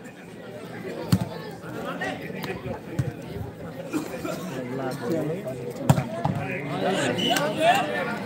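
A volleyball being struck hard during a rally, about three sharp hits roughly a second, three seconds and six seconds in, the one near six seconds the loudest, over spectators' chatter.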